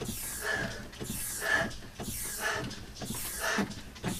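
A man panting and grunting hard in a fast, even rhythm, about two breaths a second, in time with his leg strokes against an upright rowing machine's hydraulic shock during an all-out Tabata sprint.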